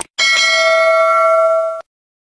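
Notification-bell sound effect: a click, then one bell ding that rings steadily for about a second and a half and cuts off suddenly.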